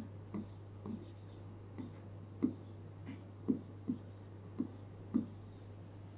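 Stylus writing on an interactive touchscreen whiteboard: a series of light taps, roughly two a second, with short scratchy strokes as an equation is written out.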